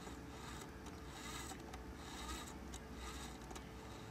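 Faint rubbing and scraping as the geared output shaft of a Faulhaber gearmotor is turned slowly by hand, over a faint steady hum.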